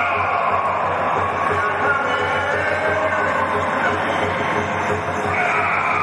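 Traditional Burmese lethwei ring music: a wailing, sliding shawm melody over fast, steady drumming.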